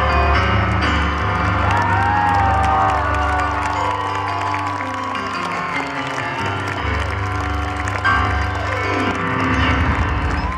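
Live band with piano holding the closing chords of a song while the audience cheers over them. Near the end the music winds down and applause takes over.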